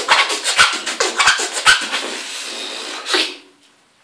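Beatboxing with a hand cupped over the mouth: a fast run of sharp clicks and scratch-like sounds with a few deep kick-drum thumps, then a held hiss for about a second. A last burst comes just after three seconds, and then the beatbox stops.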